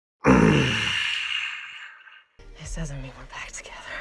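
A person's loud voiced sigh, its pitch falling as it fades over about a second and a half, then quieter speech after a brief cut to silence.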